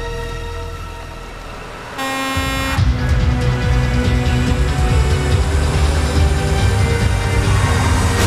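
Tense score music. About two seconds in there is a short blast of a fire engine's air horn, followed by a heavy low rumble of its engine running under the music.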